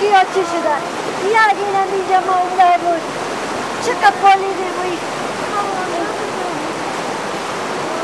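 A high-pitched voice making long, drawn-out, wavering sounds over a steady, loud rushing noise like running water.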